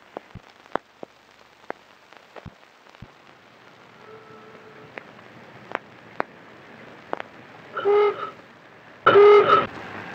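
Scattered clicks and hiss of an old optical film soundtrack, then a horn sounding a single held note: faintly about four seconds in, then two louder short blasts near the end.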